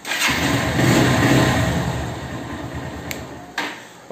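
Honda Hornet 160R's single-cylinder engine started on the electric starter, catching at once and running for about three and a half seconds, then cutting off abruptly as the newly fitted kill switch is thrown; the engine dying shows the kill switch works.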